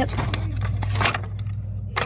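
Flat decor signs being lifted out of a cardboard display box, scraping against each other and the box, with two sharp clacks, about a second in and near the end.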